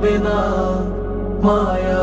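A mournful Bengali song: a sustained sung melody over a steady low drone, with a new phrase starting a little past halfway.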